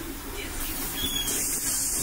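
Inside a city bus: a low engine and road rumble, with a loud compressed-air hiss from the bus's pneumatic system building up about a second in and running on.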